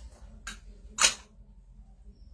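Two short hisses of air from plastic hijama suction cups being worked on a patient's back, about half a second apart, the second louder.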